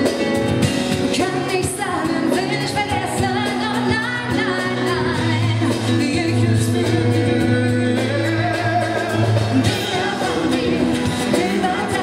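Live pop ballad: a female vocalist singing a wavering melody over acoustic guitar and band accompaniment, with sustained low bass notes.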